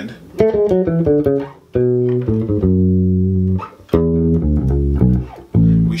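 Four-string electric bass guitar played fingerstyle, descending a major scale. A quick run of notes is followed by slower notes with a long held note near the middle, showing the shift with the first finger on the way down.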